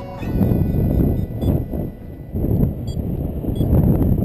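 Airflow buffeting the microphone of a paraglider's harness-mounted camera in flight: a low, gusty rumble that swells and fades, with a few faint short high beeps.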